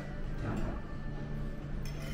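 Restaurant dining-room background: a steady low hum with faint room noise, and one short click near the end.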